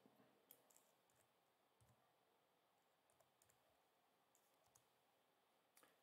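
Near silence, with a few very faint clicks scattered through it.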